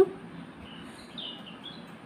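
Faint small-bird chirps in the background: several short, falling chirps, mostly in the second half, over a steady low hiss.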